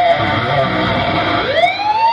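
Electric guitar played through an Axe-Fx processor into an AccuGroove Supremo speaker cabinet: a run of notes, then about a second and a half in a single note that glides up in pitch and is held with vibrato.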